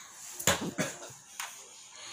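A hand patting a Saint Bernard's body: three short soft thumps, the first about half a second in and the loudest.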